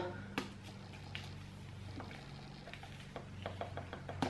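Quiet low steady hum with a few faint clicks, and a quicker run of small ticks in the last second, from a plastic-wrapped roll of garbage bags being turned in the hands.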